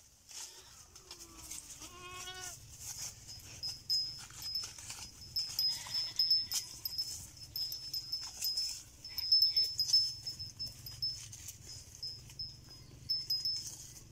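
A goat bleats once about a second in, one wavering, quavering call. After it come close-up crackling and rustling sounds among grazing goats, over a thin high tone that keeps cutting in and out.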